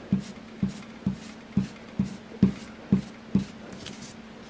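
Foam sponge dauber tapping ink onto cardstock on a tabletop, a soft tap about twice a second, over a faint steady hum.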